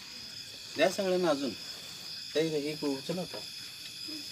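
Crickets chirping steadily in the background, with people talking in two short spells over them.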